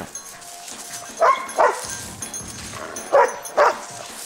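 Belgian Malinois barking in two pairs of sharp barks about two seconds apart: a search-and-rescue dog's alert barks, signalling that it has found a person.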